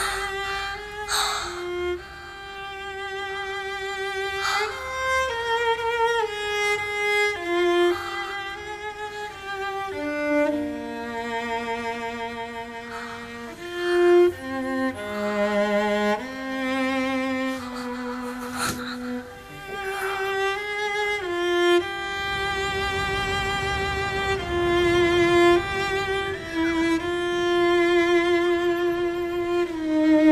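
Slow, mournful background music on bowed strings, a violin playing long held notes with vibrato over lower strings.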